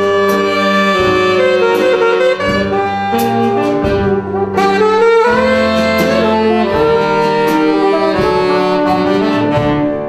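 Saxophones playing a jazz-style tune with a wind band, several instruments sounding together in harmony with crisp note attacks.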